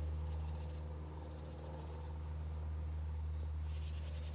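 A steady low machine hum with a stack of faint overtones, holding one pitch without change.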